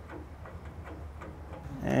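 Faint small metallic ticks and clicks of a brass gas-hose fitting being threaded onto a gas valve by hand, over a low steady hum.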